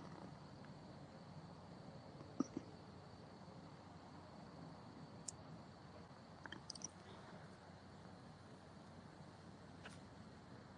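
Near silence: faint room tone with a few soft, short clicks.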